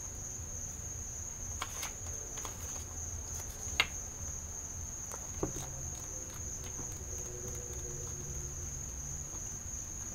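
A deck of tarot cards being shuffled by hand, giving soft riffling and a few light clicks, the sharpest two around the middle. Underneath runs a steady high-pitched tone and a low hum.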